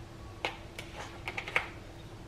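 A quick run of light clicks and taps, about six in just over a second, the last one the sharpest, from hands handling things at a kitchen counter.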